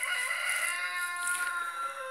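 A rooster crowing: one long, held call that drifts slightly lower in pitch and fades toward the end.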